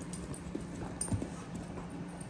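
Dogs' claws clicking and tapping on a hardwood floor as several dogs move about, with a louder knock about a second in.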